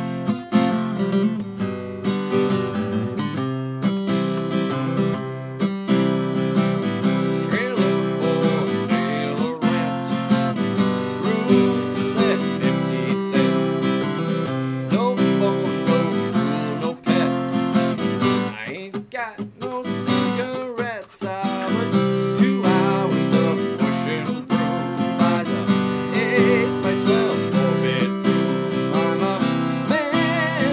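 Seagull Natural Elements Mini Jumbo acoustic guitar with a solid spruce top, strummed in steady chords in a country-style song, with a man's voice singing along in places. The playing thins out briefly about two-thirds of the way through before the full strumming resumes.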